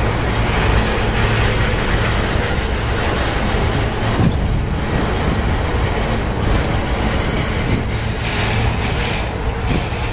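Freight train boxcars rolling past, their steel wheels on the rails making a steady rumble and clatter.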